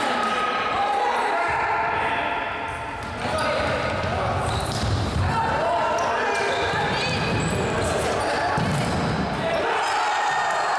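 Futsal play in an echoing indoor sports hall: a ball kicked and bouncing on the wooden court, with voices shouting and calling throughout.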